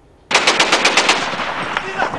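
Automatic gunfire: a rapid burst of shots, about ten a second, that starts suddenly a third of a second in and then goes on as a more ragged, overlapping clatter of shots.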